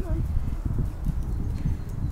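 Footsteps walking on a tarmac path: an irregular run of low thuds with a rumble under them.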